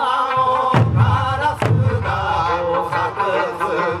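Eisa drumming: large barrel drums (ōdaiko) struck together in heavy thumps, the clearest about a second apart in the first half, over amplified Okinawan folk song with a singing voice.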